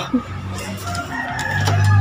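A rooster crowing in the background over a low, steady hum that grows louder in the second half.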